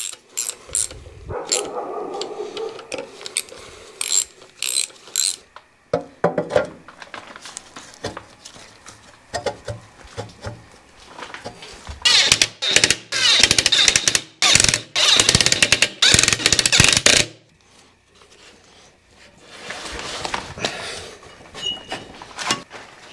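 Cordless impact driver hammering in several loud bursts from about twelve seconds in, run onto a fastener at the cooling-fan hub of a Caterpillar D4 engine. Before that come light metallic clinks and knocks of parts being handled.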